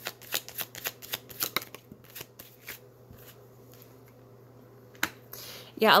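A tarot deck being shuffled by hand: a rapid run of card clicks for about two seconds that thins out and stops around three seconds in. There is one more single click shortly before the end.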